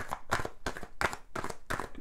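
A deck of oracle cards being shuffled by hand: a quick, irregular run of sharp card taps and flicks, about five a second.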